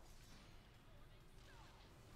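Near silence: faint room tone with only very faint, indistinct sound under it.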